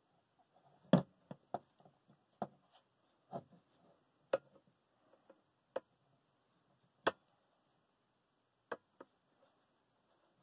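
Handling of a steel screw-pin shackle while cord is wrapped around its pin and bow: light, irregular clicks and taps, about ten of them, with quiet between.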